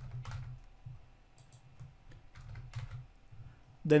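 Typing on a computer keyboard: a few scattered, light keystrokes as numbers are entered into fields.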